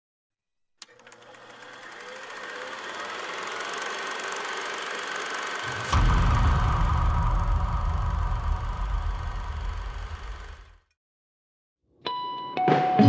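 Intro logo sound effect: a click, then a swell that builds for about five seconds into a deep rumbling boom about six seconds in, which then dies away.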